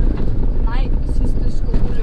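Steady low rumble of road and engine noise inside the cabin of a moving minibus.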